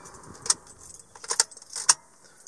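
A bunch of car keys jangling at the ignition as a hand handles the key, with a few sharp metallic clinks: one about half a second in, a quick cluster past the middle and one more near the end.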